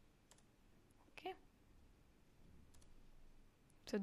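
A few faint computer mouse clicks, spread out, as checkboxes are ticked off in the software; a brief throat sound about a second in.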